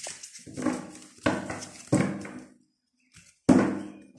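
A deck of oracle cards being shuffled by hand, in about four short rustling bursts of cards flicking against each other, the last one the loudest.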